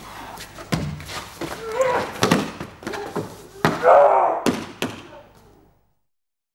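Grappling on a foam mat: bodies thudding and scuffing against the mat in several sharp knocks, with strained grunts from the fighters, the loudest about four seconds in.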